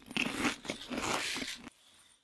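Plastic pellet filling inside a beanbag crunching and rustling as the beanbag is squeezed and kneaded by hand. The crunching stops shortly before the end.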